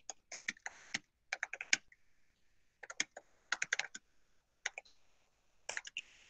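Typing on a computer keyboard: quick runs of keystrokes in short bursts with brief pauses between them, picked up by a video-call microphone.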